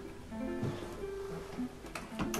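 Open strings of a nylon-string classical guitar ringing softly as the instrument is handled and lifted into playing position, several held notes sounding at once.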